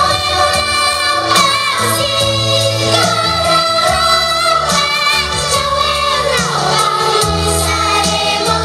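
A children's choir sings a song with instrumental backing and a steady bass line, a girl's voice leading in front.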